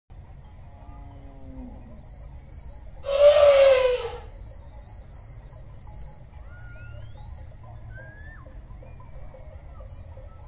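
An elephant trumpets once, loud and harsh, for about a second, about three seconds in. A lower call falling in pitch comes before it. Throughout, insects chirp in an even repeating pulse, and a few bird whistles follow the trumpet.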